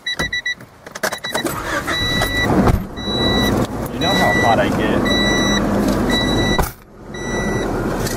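A car's warning chime beeps repeatedly, about once a second, over the steady engine and road noise inside the moving car's cabin.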